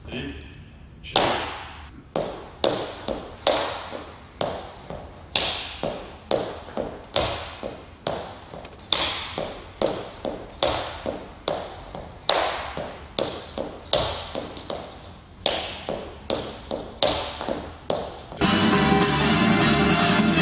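Dress shoes tapping heel and toe on a wooden floor in quick lezginka footwork: a louder strike about once a second with lighter taps between. Near the end, music cuts in suddenly and drowns them out.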